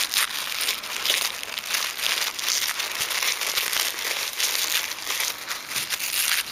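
Packaging crinkling and rustling as it is handled, a continuous run of small crackles.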